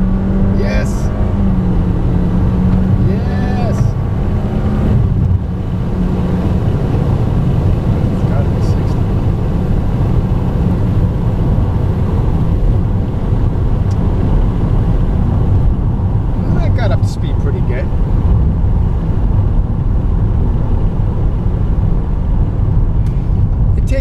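Inside the cabin of a 2019 Toyota Corolla LE under full-throttle acceleration. Its 1.8-litre four-cylinder drones at a near-steady pitch held by the CVT, then the engine note drops away about five seconds in, leaving steady road and wind noise at speed.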